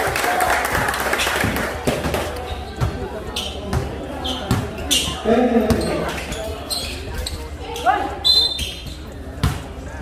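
Basketball being dribbled on a hard court, an irregular run of bounces, with spectators' voices and shouts over it.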